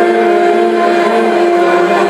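Epirote folk band led by clarinet playing a slow song of exile (xenitia) in long, sustained reedy notes. A steady held tone sits over a slower line moving below it.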